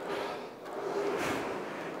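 Aviron indoor rowing machine running under a steady stroke, a soft rushing noise from its resistance mechanism that dips about half a second in and then swells again with the next drive.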